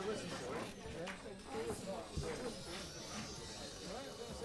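Background voices chattering at low level, with a few soft clicks and knocks of pool balls being settled in a rack.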